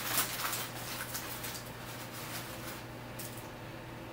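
Soft rustling and handling noises as a strip of bacon is pulled from its paper wrapping, thinning out after about a second and a half, over a steady low hum.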